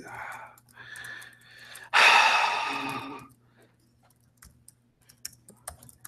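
A person's long exhaled sigh about two seconds in, fading away over about a second, after softer breathy sounds. A few faint laptop keyboard taps follow near the end.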